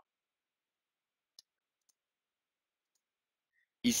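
Near silence, broken by one short, faint click about a second and a half in; a man's voice starts again right at the end.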